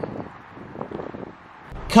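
Faint outdoor background noise with a few soft, brief ticks. A man's voice begins right at the end.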